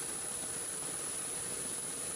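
Steady, even hiss of background noise on an airport apron beside a parked airliner, with no break or change.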